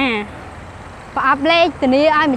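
A woman speaking in short phrases, with a steady low rumble of street traffic in the pause between them.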